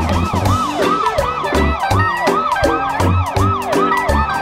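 Cartoon police car siren wailing in quick up-and-down sweeps, about three a second, over the backing music of a children's song with a steady bass line.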